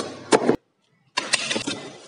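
A kitchen knife slicing through packing tape and into the cardboard seam of a shipping box in two scratchy strokes: a short one at the start and a longer one beginning a little over a second in.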